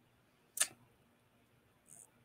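A single short mouth click, a lip smack as the lips part, about half a second in, then a faint intake of breath near the end.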